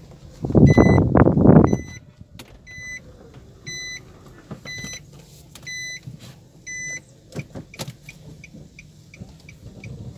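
A car's in-cabin warning chime beeping about once a second, then switching to faster short pips near the end. A loud noisy burst about a second long comes near the start.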